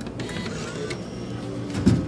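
Vending machine's dispensing mechanism whirring and humming as it delivers a bottle of water, with a thump near the end.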